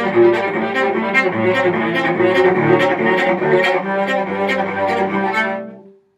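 Solo cello played with the bow in a string-crossing passage: the bow moves back and forth between strings in an even, repeating pattern of low and higher notes. It dies away just before the end.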